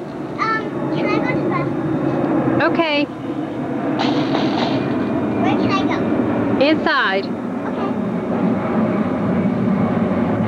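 A young girl's high voice making several short, sliding sing-song sounds, over a steady low hum.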